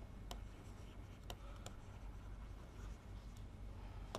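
Faint scratching of a pen stylus writing on a tablet, with a few light ticks as the tip touches down.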